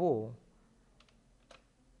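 A few faint computer keyboard keystrokes, about a second in and again half a second later.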